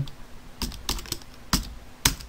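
Computer keyboard typing: a handful of separate keystrokes spaced out, the loudest about one and a half seconds in.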